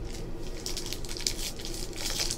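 Rustling and crinkling as hands pick up and handle trading cards and a foil-wrapped card pack, getting louder about halfway in.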